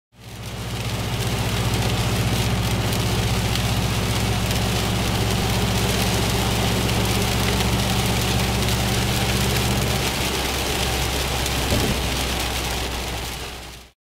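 Rain hissing and pattering on a car's windscreen, over the steady low drone of the car's engine and road noise heard inside the cabin. The drone drops away about ten seconds in, and there is a brief knock near the end.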